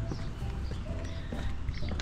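Footsteps on wooden boardwalk planks, scattered light knocks of shoes on the boards.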